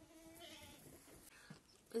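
A goat bleating faintly: one short, wavering call about half a second in.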